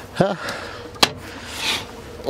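Eggs being handled at a plastic nest box and bucket during egg collection: a single sharp click about a second in, then a brief soft rustle.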